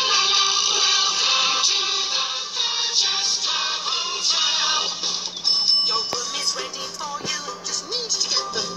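Upbeat children's TV theme song with singing, heard through a television's speaker.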